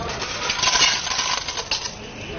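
River snails clattering out of the perforated metal drum of a hand-cranked tail-cutting machine into a stainless steel bowl: a fast, dense run of hard shell-on-metal clicks, starting about half a second in and thinning out near the end.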